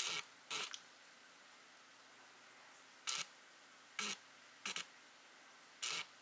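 Handling noise on a handheld camera: about six short rustling scrapes at irregular intervals, over a faint steady background hum.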